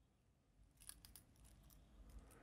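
Near silence, with a few faint metallic clicks about a second in: the solid links of a three-row steel watch bracelet shifting against each other as it is handled.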